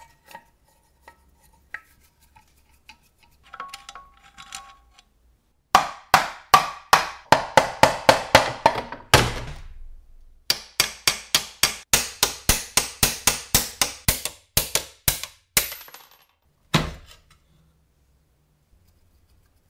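Sharp metal-on-metal knocks, about three a second, in two long runs with a short pause between and one last knock near the end, each ringing briefly. Before them, faint clicks of a screwdriver working screws on an old circular saw.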